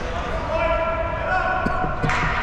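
A voice holding a long shout for about a second and a half in an echoing ice hockey arena, with a few light knocks from play on the ice.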